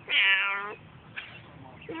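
Siamese cat meowing: one drawn-out meow lasting most of a second, then the start of another meow right at the end.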